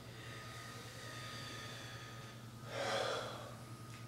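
A person's short, noisy breath about three seconds in, taken while rising from a deep bow. Faint high ringing tones fade away over the first couple of seconds, under a thin steady whine.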